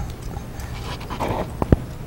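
A steady low room hum with faint rustling at a desk microphone, then two sharp knocks in quick succession about a second and a half in.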